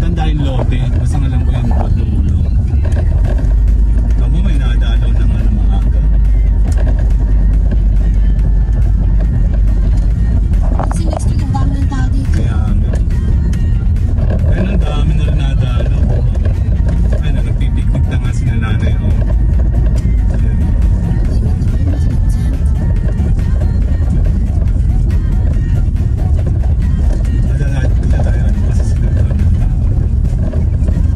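Steady low rumble of a car driving, heard from inside the cabin, with music and a voice over it.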